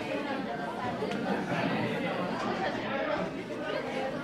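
Low, indistinct chatter of several students' voices in a classroom, with no single voice standing out.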